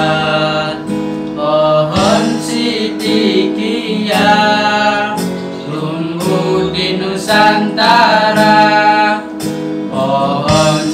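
A group of young male voices singing an Indonesian devotional syair together, with long held notes, accompanied by a strummed acoustic guitar.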